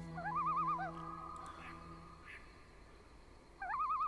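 A night bird's wavering, trilled call, heard twice: once in the first second, trailing into a short held note, and again near the end. It is faint, over a low steady tone that fades early on.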